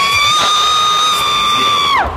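A single high-pitched scream that slides up and is held steady for about two seconds, then drops away at the end.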